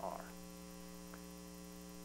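Steady electrical mains hum with several overtones, unchanging, in the sound system's audio feed.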